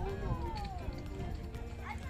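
A young child's high voice in long, drawn-out sliding tones, falling through the first second and wavering after, like a sing-song call.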